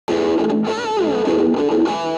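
Distorted electric guitar played through a DOD FreqOut feedback-emulator pedal: sustained notes with a wavering bend about a second in, then a slide down, and a held note starting near the end.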